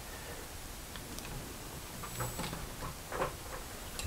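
A few faint metal clicks and light taps from a lathe chuck key being turned, closing the chuck jaws on a workpiece.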